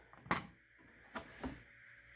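Handling noise from a Silky Gomboy folding saw in its Kydex sheath on a wooden board: one sharp knock shortly after the start, then two fainter knocks about a second in.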